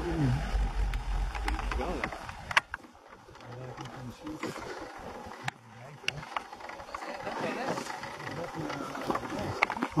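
Low, indistinct voices with wind rumbling on the microphone for the first two seconds. A few sharp clicks come through, the loudest about two and a half seconds in.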